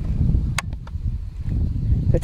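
Wind buffeting the microphone, a low rumble throughout, with a few faint clicks about half a second in.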